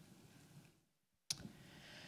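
Near silence with faint room tone. The sound drops out completely for about half a second, then a single sharp click comes in about a second and a quarter in.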